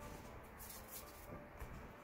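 Faint soft rustling of hands handling and pressing a small ball of modelling clay on a wooden board, with a brief scratchy brush a little over half a second in.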